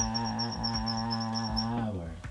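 A man's voice holds one long, low, steady note, which cuts off near the end. Over it come quick high squeaks of a marker drawing on a whiteboard.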